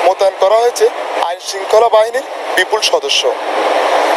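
Voices speaking over a steady haze of outdoor street noise, which fills the last second or so more evenly.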